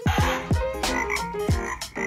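Recorded frog croaks from a children's animal-sound book, over upbeat background music with a steady thumping beat.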